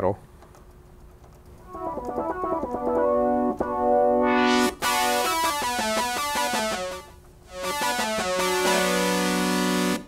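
Sequential Circuits Prophet-5 analog synthesizer playing a sequence of chords, its volume swelled by a control-voltage foot pedal driving the VCA. The sound fades in after about a second and a half, drops away about seven seconds in, then swells back up.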